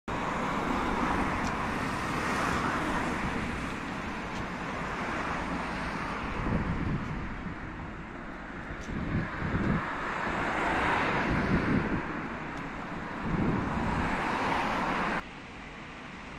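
Road traffic: cars passing close by one after another, rising and fading every few seconds, with wind on the microphone. The sound drops suddenly to a quieter background hum near the end.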